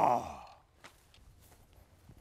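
The tail of a man's long, drawn-out shout trailing off in the first half-second, followed by a few faint ticks and rustles.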